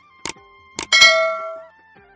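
Subscribe-button animation sound effect: two quick mouse clicks, then a bright notification-bell ding that rings out for about half a second.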